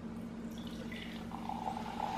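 Soda poured from a can into a glass, a liquid trickle that grows louder about halfway through.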